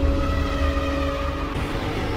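Cinematic logo-intro sound design: a deep rumble under several sustained tones, which shift about one and a half seconds in.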